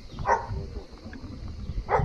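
Two short barks, about a second and a half apart, over a low rumble from the moving bicycle.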